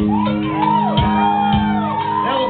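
Live band playing: drums and bass under a long, wavering shouted vocal into a microphone.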